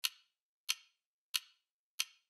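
Four sharp, evenly spaced ticks about two-thirds of a second apart over complete silence, like a clock ticking, with a fainter fifth tick just after.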